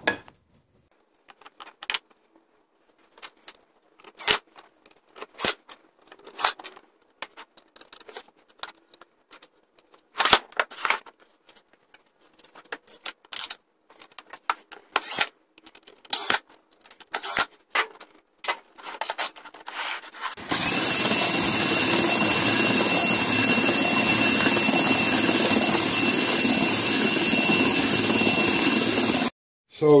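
Knocks and clicks of plywood parts being handled and set in place, with short bursts of a cordless drill driving screws. About twenty seconds in, a power tool starts and runs steadily and loudly for about nine seconds, then cuts off suddenly.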